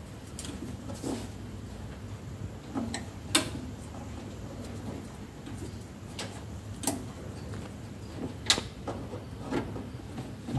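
Hands handling wires at the terminals of a metal switch box, making scattered sharp clicks and knocks about every one to three seconds. A steady low hum runs underneath.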